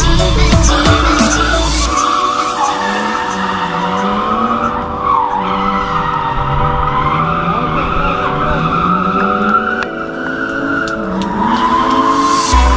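A drift car's engine revving up and down while its tyres squeal through a slide, under background music. A heavy music beat dominates the first two seconds, then drops away so the engine and tyres come through.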